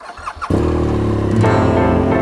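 A BMW R1200GS boxer-twin motorcycle engine starting. About half a second in, loud keyboard music cuts in suddenly and dominates from then on.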